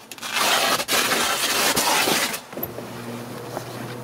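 Heavy canvas blackout cover rustling and crumpling as it is handled, loud and crackly for about two seconds, then giving way to a quieter low steady hum.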